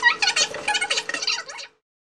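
A heat gun's clip played back sped up: the fan's hum raised in pitch under a quick run of high clattering sounds, cutting off suddenly near the end.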